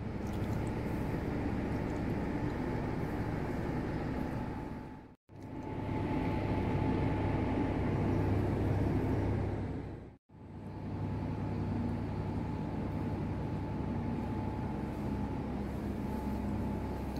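A steady low background hum with a faint, constant high whine over it, broken twice by a sudden brief silence where the recording is cut.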